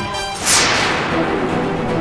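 A sharp whoosh sound effect about half a second in, falling in pitch and fading over about a second, laid over dramatic background music.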